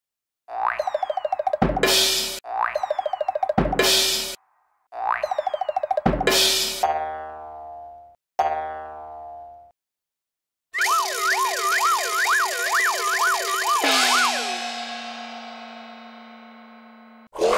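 Cartoon sound effects: three springy boings, each ending in a sharp bright burst, then two falling slide-like tones, then a longer wobbling boing that settles into a held tone and fades out.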